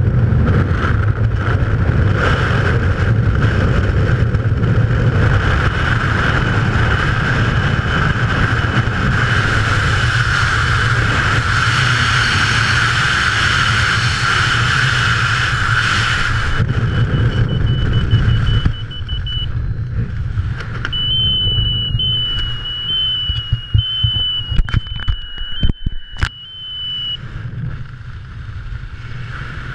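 Loud wind rushing over a skydiver's helmet-mounted camera microphone in freefall, dropping off suddenly about 18 seconds in as the parachute opens. After that, quieter, uneven wind under the canopy, with a thin steady high whine and a few sharp knocks near the end.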